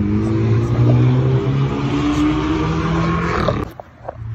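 A car engine running close by, cutting off suddenly near the end.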